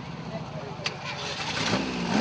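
A motor trike's engine running at idle with a low, pulsing rumble, with a sharp click about a second in; it grows louder near the end as the engine is revved.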